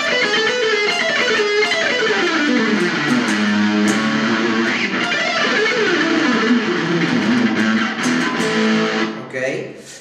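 Music Man Silhouette electric guitar playing fast runs of the A harmonic minor scale, three notes per string, repeated in octaves as they step down across the strings. The runs fall in pitch again and again, and the sound dies away just before the end.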